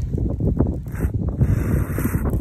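Plastic soda bottle crackling and crinkling as it is gripped and squeezed by hand, with a hiss from about halfway through as shaken, fizzy soda sprays out of the pellet hole in its side.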